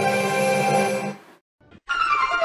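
Television production-company logo jingle ending on a held chord that dies away a little over a second in, then a short silence before another logo's music starts right at the end.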